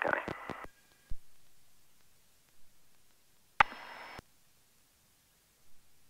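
The last word of a pilot's radio call comes over the headset intercom feed, then the line goes quiet. A click comes about a second in, and a half-second burst of radio noise with a click at each end comes a little past the middle. No engine is heard on the intercom feed.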